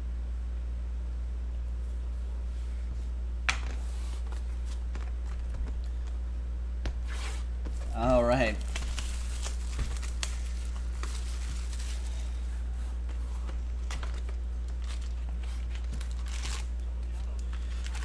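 Clear plastic shrink wrap being torn and crinkled off a sealed trading-card box, in scattered crackles, with a sharp click about three and a half seconds in and a brief wavering vocal sound around eight seconds. A steady low hum sits underneath.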